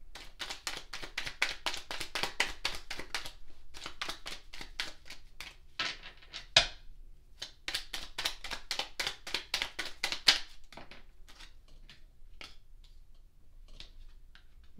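A deck of tarot cards being shuffled by hand: a fast run of card-on-card clicks and snaps that thins out to a few scattered clicks about ten seconds in.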